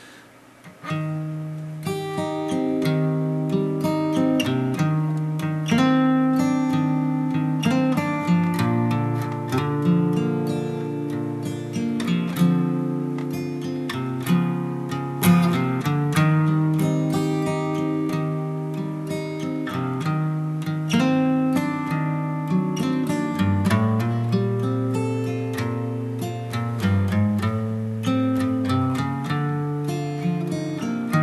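Guitar playing a song's instrumental introduction, chords picked and strummed in a steady rhythm, starting about a second in.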